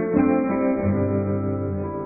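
Background music: plucked guitar notes struck near the start, then ringing and slowly fading.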